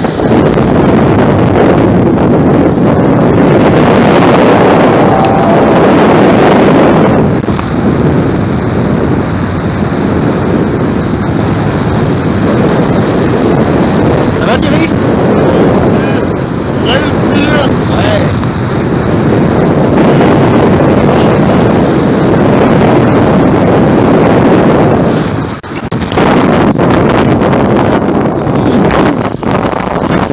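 Wind buffeting the microphone of a camera on a paraglider in flight: a loud, rushing roar that swells and eases, with a brief drop about three-quarters of the way through.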